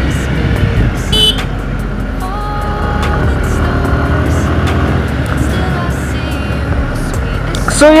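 Motorcycle engine running and wind rushing over a helmet-mounted microphone while riding at about highway speed, a steady loud rumble.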